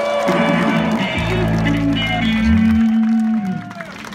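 Live rock band playing, with electric guitar and bass holding long notes. The sound dies down shortly before the end.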